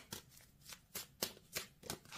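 A deck of oracle cards being shuffled by hand: an uneven run of faint card flicks and slaps.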